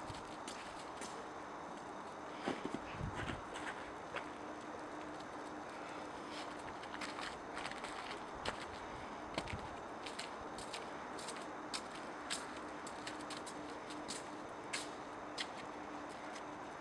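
Faint outdoor background with light footsteps on snow and paving and many short scattered clicks; a faint steady hum comes in about six seconds in.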